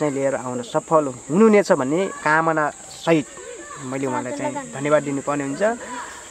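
A steady high-pitched chirring of insects, running unbroken under a woman's voice.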